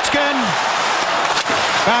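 Ice hockey arena crowd noise under a TV broadcast, with one sharp crack about one and a half seconds in as a shot is taken on goal from in front of the net.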